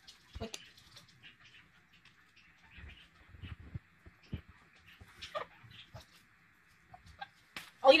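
Red-lored Amazon parrot biting and crunching a piece of burrito with its beak: scattered small clicks and crackles with a few soft knocks, and a short vocal sound about five seconds in. A woman's voice starts near the end.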